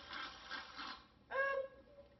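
Aerosol can of Reddi-wip whipped cream spraying onto a drink: a sputtering hiss that stops about a second in, followed by a short hummed "mm".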